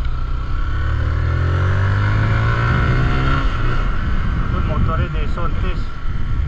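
Zontes GK 350 motorcycle's single-cylinder engine pulling away and accelerating, rising in pitch for about three seconds before easing off, under a steady low rumble of wind and road noise.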